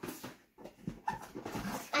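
Boxed toy sets being handled and pulled out of a fabric storage box: cardboard and plastic packaging rustling and scraping.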